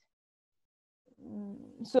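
Dead silence for about a second, then a woman's voice starting up with a drawn-out, held hesitation sound that runs into the word "So" near the end.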